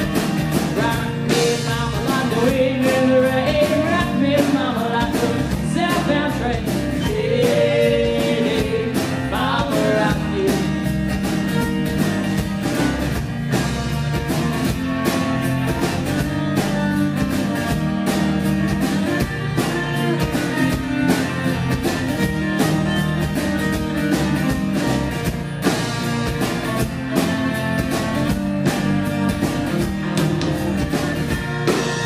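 A live folk-rock band playing an instrumental passage: bowed viola over strummed acoustic guitar, electric bass and drum kit. A gliding viola melody stands out during the first ten seconds.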